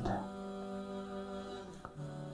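Soft background music: a sustained, drone-like chord held steady under the pause in the talk, with one faint click near the end.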